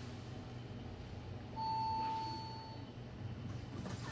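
A single steady electronic chime, about a second long, sounds about a second and a half in over a low steady hum. It is a Fujitec elevator's arrival chime, signalling that the assigned car is reaching the landing.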